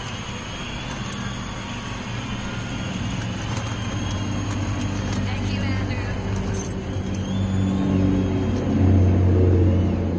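A pickup truck's engine approaching on the road, growing louder and loudest near the end.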